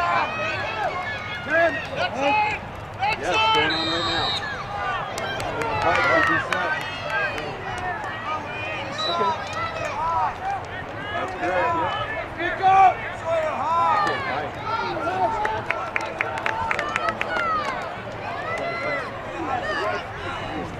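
Many overlapping voices of spectators and players shouting and calling out across the field, with no single clear speaker. A brief high steady tone sounds about four seconds in, and a quick run of sharp clicks comes near the end.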